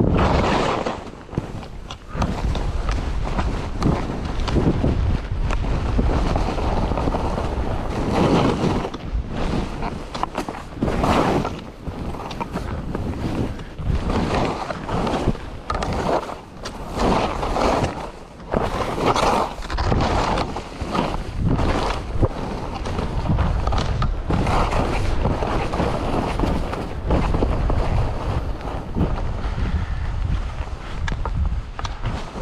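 Skis sliding and carving through soft snow, swelling with each turn every second or two, with wind rumbling on the microphone.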